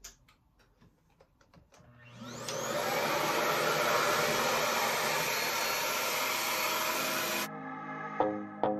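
RevAir reverse-air hair dryer, a suction dryer that pulls the hair into its tube through a hose, switched on about two seconds in. Its motor spins up with a rising whine, then runs with a steady, loud rushing noise until music cuts in near the end.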